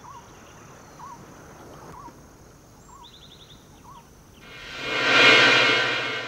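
Faint short chirps repeating about once a second, with a brief rapid trill about halfway through. Near the end a loud swelling wash of sound with a held pitched drone rises, peaks and begins to fade.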